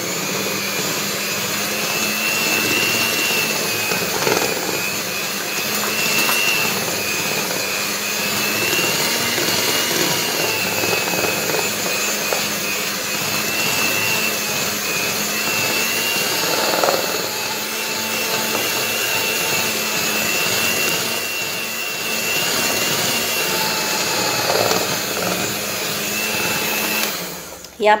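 Electric hand mixer running steadily, its beaters whisking cake batter in a bowl: a constant motor whine that wavers slightly in pitch. It switches off about a second before the end.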